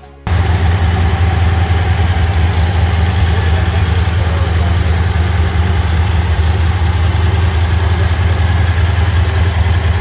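A Chevrolet pickup's V8 engine idling steadily, heard up close from the open engine bay. It comes in abruptly just after the start and stays a deep, even drone.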